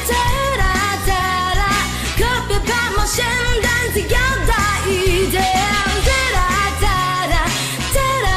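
Chinese pop song: a singer's voice over a backing track with bass and a steady drum beat.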